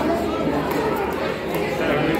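A crowd of people talking at once, many voices overlapping steadily.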